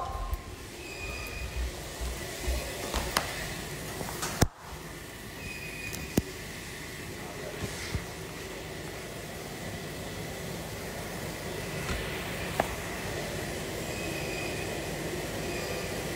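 Steady room noise with a few sharp clicks and knocks from a phone being handled and moved around, the loudest knock about four and a half seconds in.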